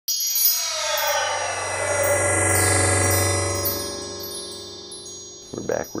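Title-card intro sting: a shimmering wash of chimes over a low hum, with falling sweeps, swelling then fading away over about five seconds. A man starts speaking right at the end.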